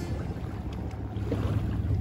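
Wind buffeting the microphone: a steady low rumble with a faint hiss above it.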